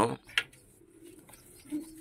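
Faint, low cooing of domestic pigeons, with a single sharp click about half a second in.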